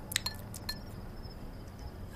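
A straw or stirrer clinking against a drinking glass as a drink is stirred: a quick run of about five light, ringing clinks in the first second, then stillness.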